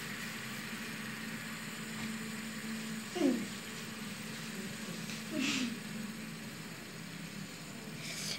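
Quiet room with a faint steady hum. Two brief falling voice sounds come about three and five and a half seconds in.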